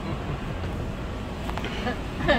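Steady low rumble of a car's engine and road noise heard inside the cabin, with brief laughter at the start.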